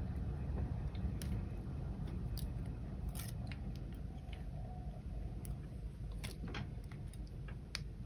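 Copper craft wire being pulled through nylon-jaw pliers to straighten it, with small sharp clicks from the pliers and wire every second or so.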